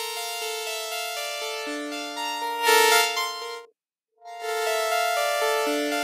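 Parsec 2 spectral synthesizer playing held, overtone-rich notes in a changing chord sequence, its tone shifting as the filter cutoff is adjusted. It cuts out for about half a second just past the middle, then comes back.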